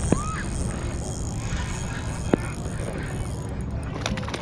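Steady wind and water noise while a hooked bass is played from a kayak. There are two sharp clicks, one near the start and one a little past the middle, and a brief rising squeak just after the first.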